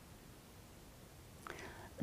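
Near silence with faint room tone, then near the end a short, soft intake of breath by a woman just before she speaks.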